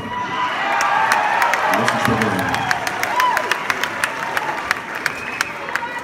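Concert audience cheering and clapping, with scattered whistles, in response to a song introduction.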